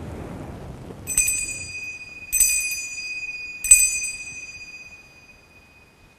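Altar bell struck three times, a little over a second apart, each strike ringing on and fading slowly. This is the ring that marks the elevation at the consecration of the Mass.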